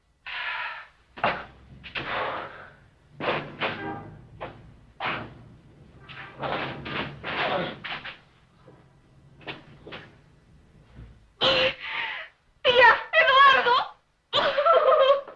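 A scuffle between two men: short strained grunts and breaths mixed with shuffling and bumps of bodies on the ground. Near the end a woman sobs loudly, her voice wavering.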